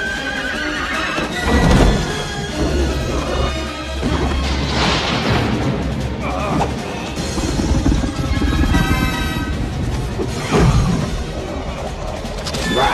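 Dramatic orchestral film score with a horse whinnying and hooves clattering as it gallops. The music swells loudly a few times.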